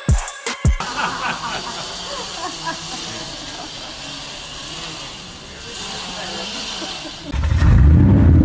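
Drum-beat music that cuts off under a second in, then a hissy phone recording with faint, indistinct sounds. Near the end a loud low rumble starts suddenly.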